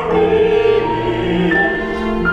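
Live chamber music for bowed strings and voices: a string quartet plays held chords that shift a few times, with a singing voice's vibrato over the sustained string notes.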